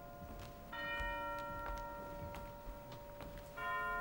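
A deep bell tolling in an opera's church scene: one stroke under a second in and another near the end, each ringing on in several pitches and slowly dying away.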